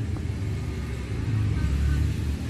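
Suzuki Jimny engine idling: a steady low rumble that swells slightly after about a second.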